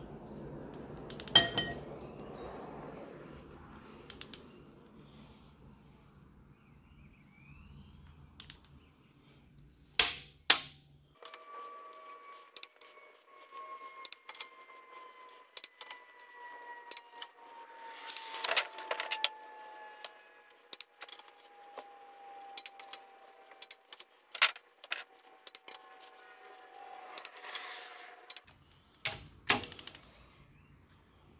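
Ratchet head of a long torque wrench clicking in short runs, with a few sharp louder clicks, as the cylinder head bolts of a Cat 3126B/C7 diesel are tightened in sequence to 211 foot-pounds. A faint tone slowly falls in pitch through the second half.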